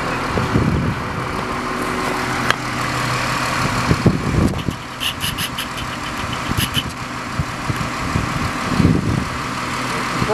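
Cummins 5.9L six-cylinder diesel engine of a 1987 Champion 710 motor grader idling steadily. A few dull bumps and a sharp click come over it, and a short run of rapid clicks sounds about halfway through.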